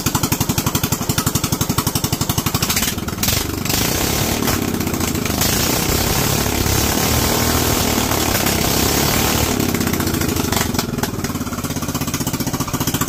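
Briggs & Stratton single-cylinder engine running with its governor removed, its speed set by hand at the throttle linkage. It runs with distinct, even firing pulses, speeds up about three to five seconds in and holds a higher speed, then drops back to slower, distinct pulses near the end.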